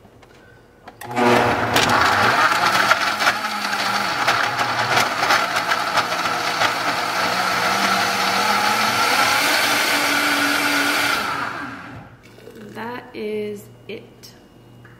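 High-speed countertop blender switched on about a second in, blending ice, chopped fruit and greens into a smoothie. It runs steadily for about ten seconds, its pitch rising a little near the end, then winds down and stops.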